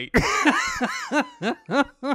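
Two men laughing, starting with a loud breathy burst a moment in, then a run of short ha-ha pulses that fade out near the end.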